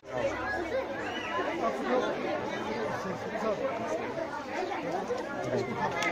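Crowd chatter: many voices talking over one another, none clear enough to make out.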